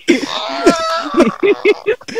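People laughing hard: a long, high-pitched drawn-out laugh, then a quick run of short laughing bursts near the end.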